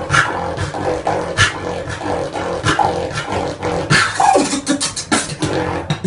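A man beatboxing: a quick, busy run of sharp mouth-made drum clicks and snares over a low hum, with a short falling vocal sound about four seconds in.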